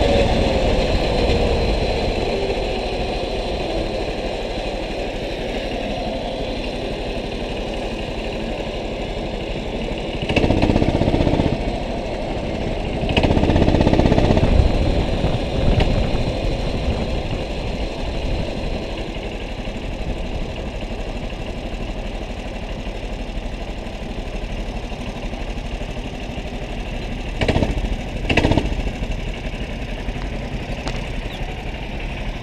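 Go-kart engine heard from on board, its pitch falling as the kart slows, then running low and steady as it rolls in, with two louder surges partway through. Two short knocks come near the end.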